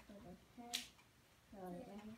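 A young child's voice murmuring softly, with one short, sharp click about three quarters of a second in.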